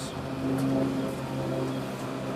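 A steady low motor hum.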